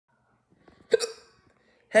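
A person's single short, hiccup-like mouth sound about a second in, after a few faint clicks. Speech begins at the very end.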